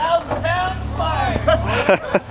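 Several people's voices calling out over a vehicle engine running low and steady as an off-road truck climbs a rock ledge.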